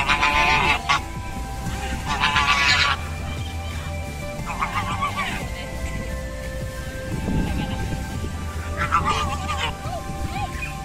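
White domestic geese honking: two loud, drawn-out honks in the first three seconds, a weaker one about five seconds in, and another near the end.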